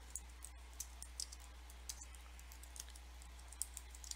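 Faint typing on a computer keyboard: a scatter of light, irregular key clicks.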